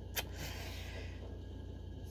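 Quiet room tone with a steady low hum, a single short click just after the start, and a faint hiss for about a second after it.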